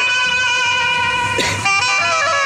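Loud band music from horn loudspeakers: a reedy wind-instrument melody over steady held notes. There is a brief noisy burst about a second and a half in.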